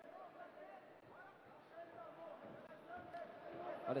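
Faint arena ambience of distant voices calling out around a kickboxing ring, with a faint knock about three seconds in.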